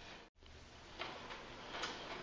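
Faint scattered clicks and taps, the loudest near the end, after a split-second dropout to silence about a third of a second in.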